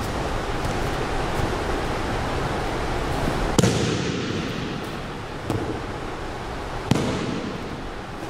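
Breakfall slaps on a gym mat as an aikido partner is thrown and lands: a loud sharp slap about halfway through that echoes around the hall, a lighter knock a couple of seconds later and another sharp slap near the end, over a steady hiss of room noise.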